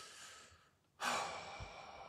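A man breathing out into a close microphone between words: a breath trails off, a short gap, then a sigh starts suddenly about a second in and slowly fades.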